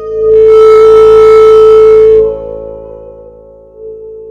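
La Diantenne 2.0, a self-built electronic instrument, holding one steady electronic tone. Shortly after the start it swells to a loud, bright peak, and just past two seconds it drops back to a softer, duller tone that shifts a little in pitch near the end.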